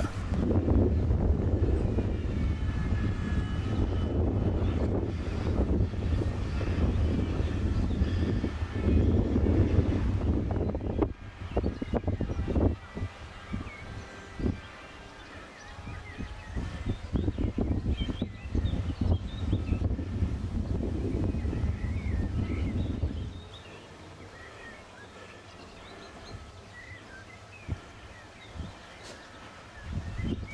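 Wind buffeting the camera microphone as a steady rumble that drops away about 23 seconds in, with birds chirping faintly throughout.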